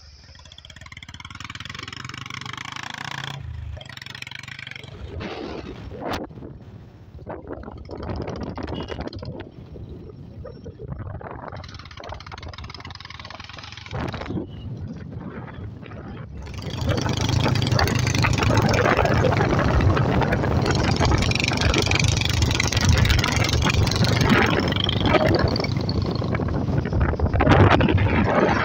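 Running noise of a motor vehicle travelling along a road, mixed with wind rushing on the microphone; it grows much louder a little past halfway through.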